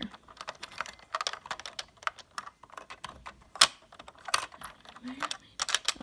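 Plastic Lego bricks clicking and rattling as pieces are handled and pressed into place on a model airplane: a quick, irregular run of small clicks, with a couple of sharper snaps a little past halfway.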